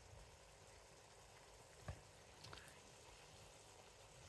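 Near silence: faint room tone with a soft click a little before halfway.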